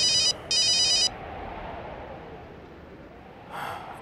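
Mobile phone ringing: two short bursts of a high electronic trilling ringtone in the first second, then it stops.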